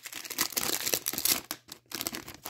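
A hobby pack's foil wrapper of 2021-22 Upper Deck Extended Series hockey cards being torn open and crinkled by hand: a dense crackling rustle with small snaps, easing off near the end.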